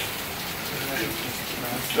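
Steady rain falling, with faint voices under it.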